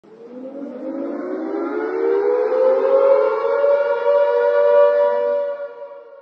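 A siren-like wail of several tones rising together in pitch over the first three seconds, then holding one steady note and fading near the end.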